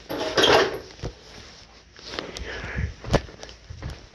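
A storm door being opened and let swing shut, with footsteps: a loud rustling burst in the first second, then a few sharp clicks and knocks, the sharpest about three seconds in.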